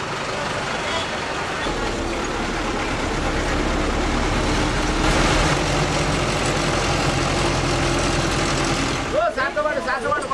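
City bus heard from inside the cabin while it drives: a steady engine hum with road noise, the engine note growing stronger about two seconds in.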